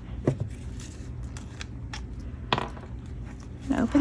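A few light clicks and taps from hands handling a paper-covered journal and small craft supplies on a tabletop, over a low steady hum.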